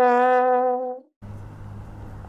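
Channel logo sting: a held tone, slightly lower than the short note before it, that stops about a second in. A quieter steady low hum follows.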